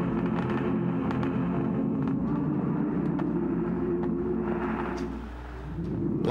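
Old phonograph record spinning: a steady low droning hum with scattered clicks of surface crackle, dipping slightly about five seconds in.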